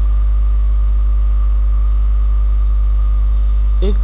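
Loud, steady low electrical mains hum in the recording, with a fainter, higher steady whine above it.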